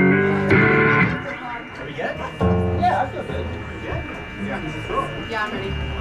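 Electric and acoustic guitars through the PA sounding a couple of loose chords between songs, one in the first second and another about two and a half seconds in, with voices chattering quietly in the quieter stretch between.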